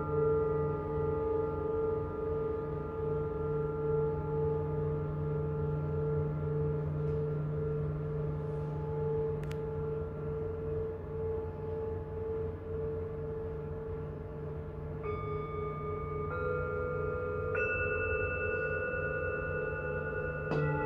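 Tibetan singing bowls ringing on, a long sustained chord whose low tones waver in slow, even beats. About three-quarters of the way through, further bowls come in one after another with higher tones, entering softly without a sharp strike.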